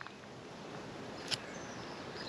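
Quiet outdoor background noise with a single faint click a little past halfway.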